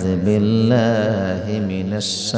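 A man's voice chanting through a microphone: one long melodic line with no breaks, gently rising and falling in pitch.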